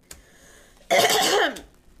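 A woman clears her throat once, a short, loud rasp about a second in.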